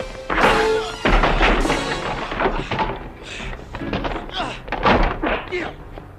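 Fight sound effects in an action film: a series of punch and kick thuds over a music score, with voices, likely grunts, between the blows.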